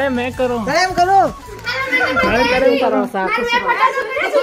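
Speech only: lively talking and calling, with children's voices overlapping from about halfway in.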